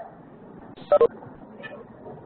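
Two short electronic beeps in quick succession, each of a few pitches sounding together like telephone keypad tones, over the steady hiss of the conference audio line.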